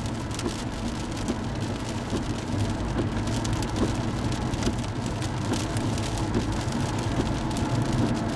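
Rain striking the windshield and roof of a moving car, many small irregular taps over a steady low rumble of the engine and tyres on a wet road, heard from inside the cabin.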